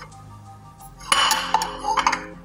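Ceramic plates clinking and scraping against each other and the table as they are handled, loudest about a second in. Faint background music underneath.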